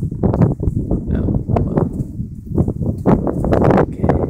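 Wood being chopped with a heavy rock instead of an axe: several sharp, irregular knocks of rock slamming into wood, loudest and closest together near the end.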